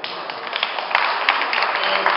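An audience applauding, the clapping growing fuller about a second in.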